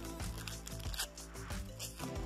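A stubborn baseball-card pack's wrapper being torn open, two short crinkling rips about a second in and near the end, over background music.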